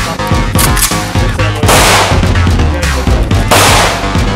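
Background music with a beat, with two short bursts of automatic fire from a submachine gun, about two seconds in and again near the end.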